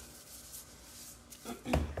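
Faint handling sounds as salt is shaken from a shaker over raw chicken thighs in a skillet, then a short throat-clearing near the end.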